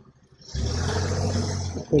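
A vehicle engine running with a steady low hum, coming in suddenly about half a second in after a moment of near quiet.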